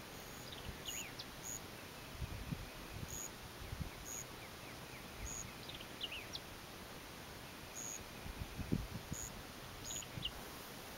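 Quiet outdoor ambience: small birds chirping now and then over a faint steady hiss, with low rumbles of wind on the microphone about two to four seconds in and again near the end.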